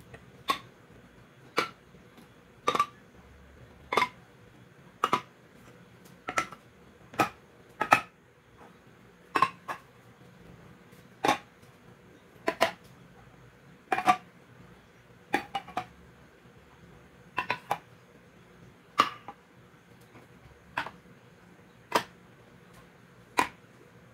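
Metal food cans being set down one at a time on a granite countertop: a sharp metal clack with a short ring about once a second, some landing as a quick double knock.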